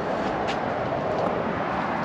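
Steady rushing outdoor background noise, with one brief click about half a second in.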